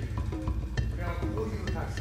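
A faint voice talking in the background over a steady hiss, with a few light clicks.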